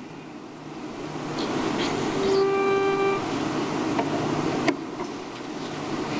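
A single steady musical note, held for about a second just before a hymn is sung, likely a starting pitch, over a hiss that builds during the first couple of seconds. A sharp knock near the end, likely the lectern microphone being touched.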